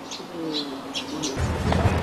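Bird calls: soft cooing notes that fall slightly in pitch, with faint short chirps higher up. A low rumble comes in about one and a half seconds in.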